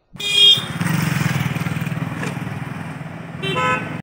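A motor vehicle engine running close by with a fast, even pulse, and short horn toots just after the start and again near the end.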